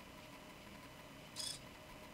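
Quiet room tone with a faint steady hum, and one brief soft hiss about one and a half seconds in.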